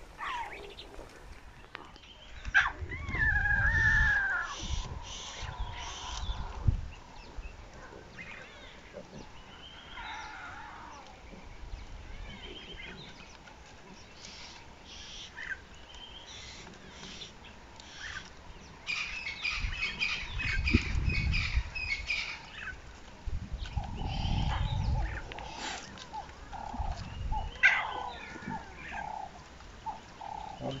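Tiny lion cubs mewing with high, falling calls among bird calls in the bush, with a few low rumbles.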